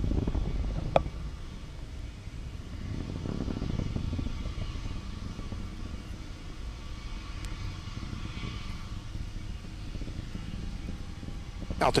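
Low, distant rumble of the Falcon 9 first stage's Merlin engines during ascent, heard from the ground. It swells and fades in waves, with one sharp click about a second in.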